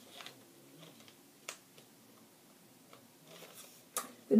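Quiet handling of paper race bibs: faint rustling with a few small clicks, a sharper one about a second and a half in and another at the very end.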